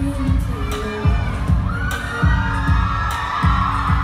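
Concert crowd shouting and cheering over a live pop band's music, with a steady kick-drum beat underneath; the crowd's voices swell from about halfway through.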